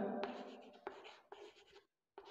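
Chalk writing on a chalkboard: faint scratching with a few short strokes as a word is written.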